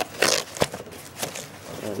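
Handling of a zippered toiletry travel bag and its cardboard packaging: a few short scraping rustles and a sharp click as it is being opened.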